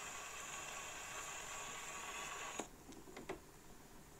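Faint steady surface hiss of a steel needle riding the blank grooves of a 78 rpm shellac record on an acoustic phonograph once the music has ended. About two and a half seconds in, a click as the soundbox is lifted off and the hiss stops, followed by a few small clicks of the tonearm being handled.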